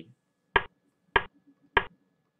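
Three sharp single clicks, evenly spaced a little over half a second apart, as a chess program steps forward through a game move by move.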